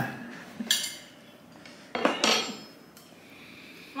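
A metal knife clinking against a ceramic plate, a few separate light knocks, the loudest about two seconds in.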